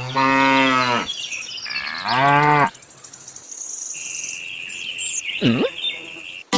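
A cow mooing twice: a call of about a second, then a shorter one about two seconds in, dubbed over the toy cow. Later comes a fainter steady high-pitched tone, and near the end a quick swooping sound effect.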